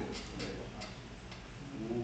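A few faint, irregular clicks, about four in the first second and a half, over a low steady background hum.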